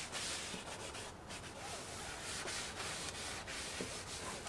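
A cloth wiping over a plastic engine cover, a soft rubbing hiss in repeated back-and-forth strokes with short breaks between them.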